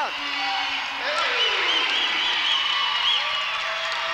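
Gym crowd cheering and shouting after a basketball steal and layup. Through the middle a referee's whistle gives one long, warbling blast, calling a foul.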